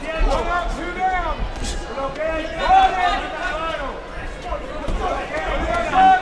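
Men's voices talking over arena background noise, with one short, sharp slap about a second and a half in.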